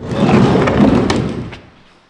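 A large plastic water tank, full of water, being shoved: a heavy rumbling scrape lasting about a second and a half, with a sharp knock about a second in.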